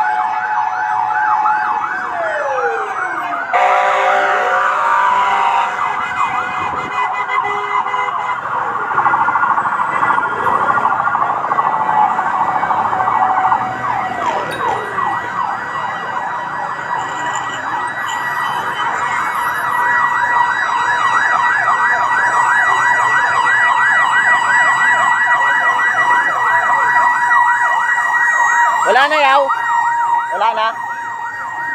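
Several fire-truck sirens sounding at once: fast warbling yelps overlapping each other, with slower rising and falling wails in the first few seconds and a steady tone beneath.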